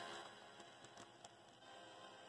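Faint background music with steady held tones and a few soft ticks.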